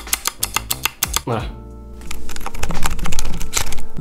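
Fast typing on a hand-built mechanical keyboard fitted with a mix of silent and clicky switches: a quick, dense clatter of keystrokes, louder in the second half.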